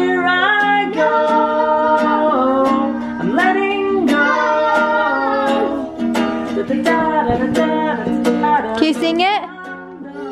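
A man singing along to a strummed kids' ukulele, which is way out of tune. The chords are strummed steadily under the sung melody.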